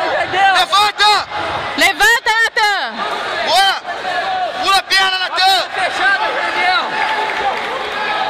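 Crowd noise in a sports hall: several voices shouting and calling over one another above a steady background din, with the loudest calls about two and five seconds in.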